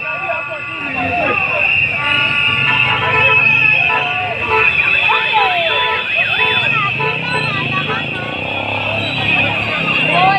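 Crowd of protesters shouting and yelling, with a vehicle horn sounding in long toots from about two to six seconds in.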